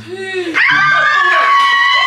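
A long, high-pitched wailing scream from a person, starting about half a second in and held steady with a slight fall in pitch, over other voices.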